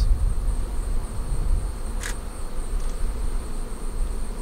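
Honeybees buzzing around active hives, a steady low drone with a thin, steady high-pitched tone over it. A single short click about halfway through.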